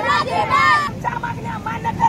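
Women's voices speaking and calling out over a low, steady noise of highway traffic; the voices thin out about a second in.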